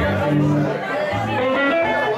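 Live band playing amplified guitar over low bass notes that step from one pitch to the next, with a run of rising guitar notes near the end, against bar crowd chatter.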